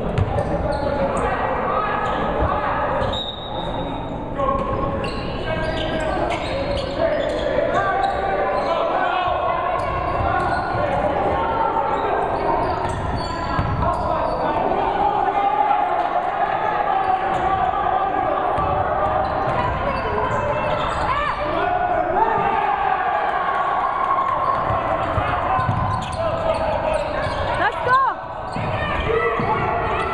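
A basketball bouncing on a hardwood gym floor amid continuous overlapping chatter from spectators and players in a large gymnasium.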